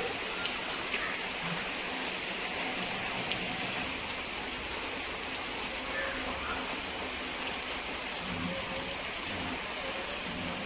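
Steady heavy rain falling on garden foliage and a flooded, muddy yard, a continuous hiss with scattered separate drop strikes close by.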